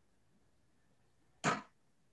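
Near silence, broken about one and a half seconds in by one short, breathy vocal sound from a man, like a quick breath.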